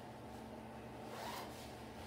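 Soft rustle of a nylon vest and jacket as a person moves, swelling briefly about a second in, over a low steady hum.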